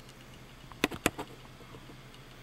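Two sharp clicks about a fifth of a second apart, a little under a second in, over a low steady hum.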